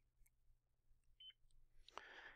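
A single short, faint high beep from a handheld mobile barcode scanner about a second in, confirming a successful scan of a location barcode label.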